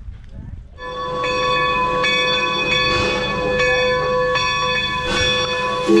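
Steam locomotive bell on Nevada Northern No. 40 ringing steadily as the engine pulls in. It starts about a second in and is struck roughly every half to three-quarters of a second, each stroke leaving a sustained metallic ring.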